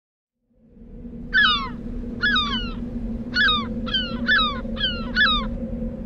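A seabird calling six times in short, falling cries, over a steady low hum that fades in during the first half second.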